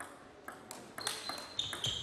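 Table tennis rally: the plastic ball clicking sharply off the bats and table, two or three hits a second. Short high squeaks come in the second half.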